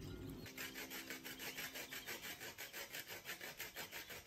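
Lemon being zested on a flat metal hand grater: quick, even rasping strokes, about seven a second, starting about half a second in.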